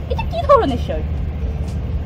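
A brief spoken phrase about half a second in, over a steady low rumble of outdoor background noise.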